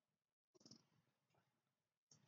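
Near silence with a faint, brief paper rustle about half a second in as a picture-book page is turned by hand, then a tiny tick.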